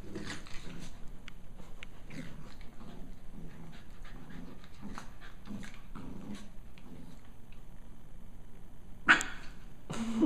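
Two Pembroke Welsh corgi puppies play-fighting: a steady run of low play growls and grunts with small scuffling sounds, and one short loud outburst about nine seconds in.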